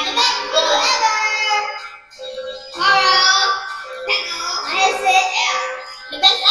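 A child singing in two phrases, with a short break about two seconds in, over a steady held note.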